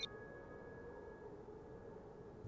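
Near silence with faint hiss and a single thin, faint tone slowly fading away.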